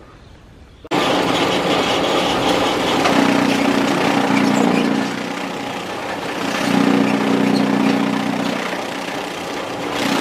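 Chaff cutter chopping dry corn stalks: the machine starts up abruptly about a second in and runs with a loud steady clatter, and a deeper hum swells twice as stalks are fed through.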